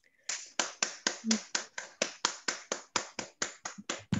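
Hand clapping in applause, a steady run of sharp claps at about five a second.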